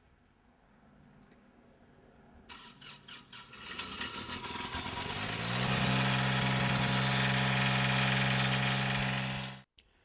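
Crafco crack sealer's Isuzu diesel engine being started after glow-plug preheat: the starter cranks from about two and a half seconds in, then the engine catches, picks up and settles into steady running. The sound cuts off suddenly near the end.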